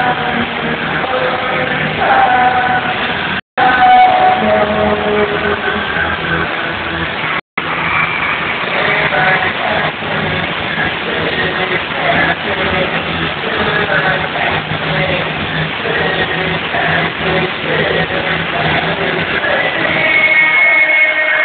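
Live pop-rock band playing loud, with a male singer, muffled and distorted as heard through a phone recording from the audience. The sound cuts out completely for a split second twice, about three and a half and about seven and a half seconds in.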